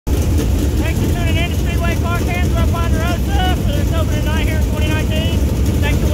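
Dirt late model race car engines running together in a pack, a steady low rumble, with a man's voice talking over them from about a second in.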